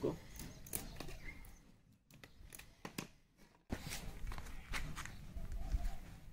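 Small clicks and rustles of hands handling and twisting together thin electrical wires, with a low rumble in the second half.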